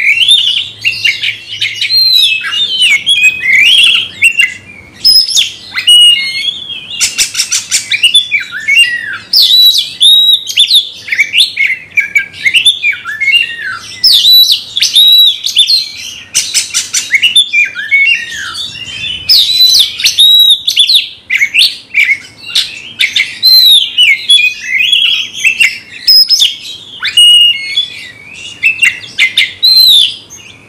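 Oriental magpie-robin (kacer) singing loudly and almost without pause in its aggressive fighting song. The song is a fast, varied run of sweeping whistles and harsh chattering notes, broken a few times by bursts of rapid clicking notes.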